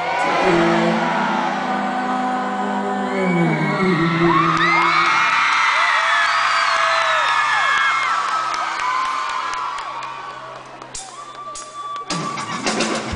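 A live pop band holds the closing chord of the song while the audience cheers and whoops over it. The cheering is loudest in the middle and dies down near the end.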